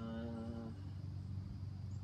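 A person's drawn-out, hesitant "uhh", held at one steady pitch for under a second, then a steady low background rumble.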